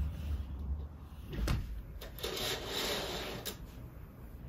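A curtain being drawn along its rail: a knock, then about a second of sliding rasp that ends in a click.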